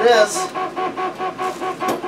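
3D printer's stepper motors running a print job: a rhythmic humming whine that pulses about five times a second. A single sharp knock comes near the end.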